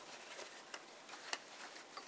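Faint handling sounds of a fountain pen's nib and feed being wiped with a paper tissue: light rustling with a couple of small clicks.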